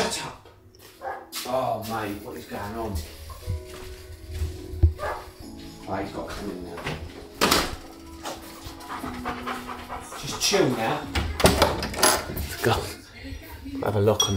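A large dog panting, with voices and music playing in the background.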